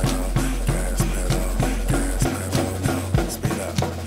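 Acoustic drum kit played live over a hip-hop backing track, with quick, even snare and hi-hat strokes on top of a deep sustained bass. The bass drops out briefly twice in the second half.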